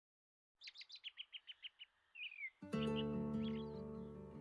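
Songbirds singing in the early morning: a quick run of about ten rapid chirps, then a single down-slurred whistle. About two and a half seconds in, soft background music with sustained chords comes in, and a few bird chirps go on faintly over it.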